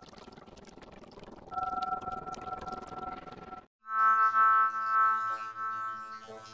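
Electronic logo-intro soundtrack: a hissy, noisy passage with a steady two-note tone that gets louder about a second and a half in, cuts off abruptly, then a loud sustained synthesizer chord starts at about four seconds.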